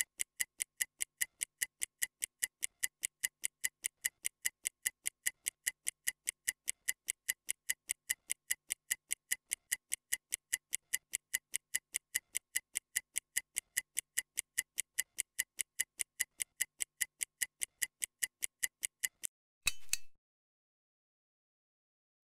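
Stopwatch ticking sound effect timing a rest interval: a steady run of crisp ticks, about four a second. The ticking stops shortly before the end, followed by one brief sound and then silence.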